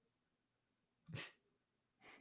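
Near silence, broken about a second in by one short, breathy vocal burst from a person.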